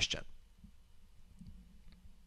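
A couple of faint mouse clicks over quiet room hum, just after a man's voice trails off at the start.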